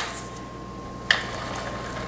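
Handheld adhesive tape runner being run along cardstock: a sharp click about a second in, followed by a short fading hiss as the tape is laid down.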